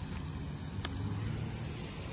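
A putter strikes a mini-golf ball once, a short sharp click about a second in, over a steady low background rumble.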